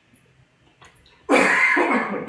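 A man coughing: one loud cough that breaks in about a second and a half in.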